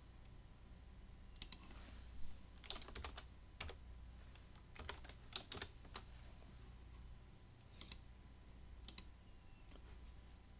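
Faint computer keyboard typing in two short runs of keystrokes about three and five seconds in, with a few separate paired clicks from a computer mouse. A low steady hum lies underneath.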